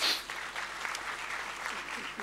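An audience applauding, a steady patter of many hands clapping.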